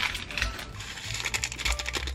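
Instant-noodle seasoning sachet torn open and squeezed out over a pot: a run of small, dry, rapid crackles of the packet's foil-plastic, busiest in the second half.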